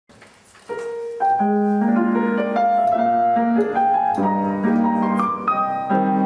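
Grand piano playing the opening bars of a Viennese song (Wienerlied), with chords and a melody line. The music starts softly less than a second in and becomes fuller a moment later.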